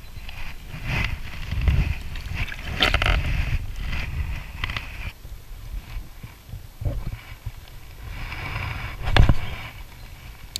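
Wind rumbling on the microphone, with bouts of hiss and a few sharp knocks as a spinning rod and reel are handled. The loudest knock comes near the end.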